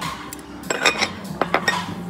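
Ceramic plates and tableware clinking as they are handled on a table: a run of sharp clinks with a short ring, starting under a second in and bunching in the second half.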